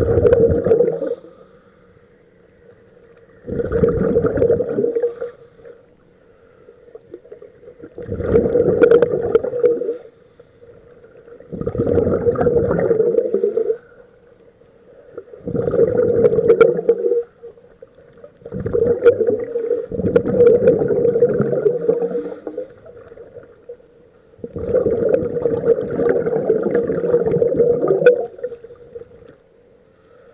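Exhaled air bubbling out of scuba regulators, heard underwater: a bubbling rumble lasting one to three seconds, repeating every three to four seconds in time with the divers' breathing, with quieter gaps between.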